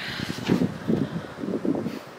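Wind gusting on the camera microphone, an uneven low buffeting rumble.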